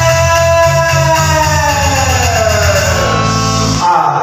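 Dangdut-rock backing music with electric guitar and a steady low bass line; a long held note slides down in pitch over the second half, and the bass stops just before the end.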